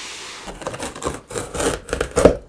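A large cardboard box scraping as it slides across a tabletop, then irregular rubbing and knocking of cardboard as the box is handled and its top flaps are worked open.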